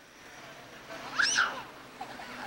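A toddler's short, high-pitched squeal a little over a second in, with a steady hiss underneath.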